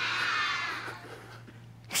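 A group of young children calling out together in high voices, about a second long and then fading out: the audience answering the storyteller's prompt with 'mouse'.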